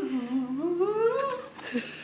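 A person's voice holding one long wordless note that dips low, then slides up high, fading out after about a second and a half.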